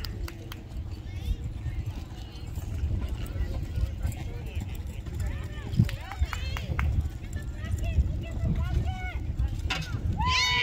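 A horse galloping on a soft dirt arena, its hoofbeats coming as irregular dull thuds over a steady low rumble, with voices in the background.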